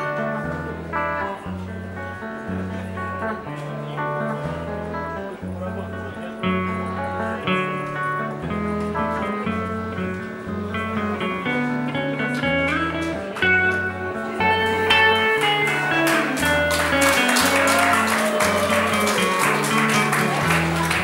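Guitars playing a live instrumental passage: a stepping line of low bass notes under picked melody notes, growing louder and fuller with strumming from about fifteen seconds in.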